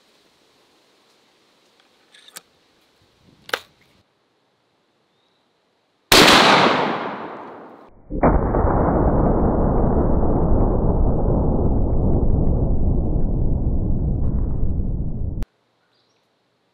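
A few light clicks as the .470 Nitro Express double rifle's action is closed. About six seconds in comes a single very loud rifle shot that echoes away over about two seconds. Then a long, low, dull roar with no high end: the shot's sound slowed down under slow-motion footage. It cuts off suddenly near the end.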